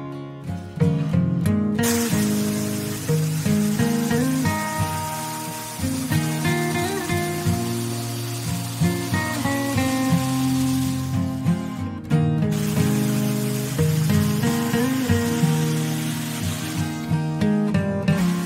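Acoustic guitar background music, with an electric jigsaw cutting a thick wooden board under it. The saw's steady noise starts about two seconds in, breaks off for about a second and a half near the middle, then runs again until shortly before the end.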